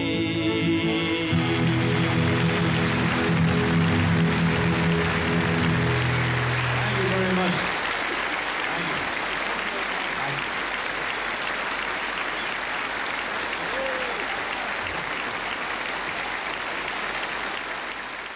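Audience applause building over the song's final held chord of keyboard and acoustic guitars. The chord stops about seven and a half seconds in, and the applause carries on steadily after it.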